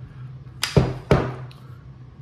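The hinged top cover of a Zastava ZPAP 92 AK pistol being released and swung open on its front hinge: two sharp metallic clacks about half a second apart, a little under a second in.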